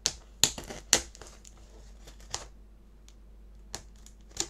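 Small knife cutting through the tape on a small cardboard box, giving sharp clicks and snaps: three quick ones in the first second, then single ones later on.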